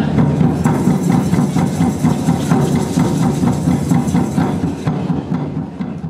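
Group hand drumming on djembes and larger floor drums: a fast, steady beat of many strikes with a deep booming body, getting softer near the end.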